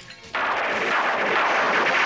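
Cartoon magic sound effect for a sparkling flash of light: a dense crackling hiss that comes in suddenly about a third of a second in and holds loud and steady.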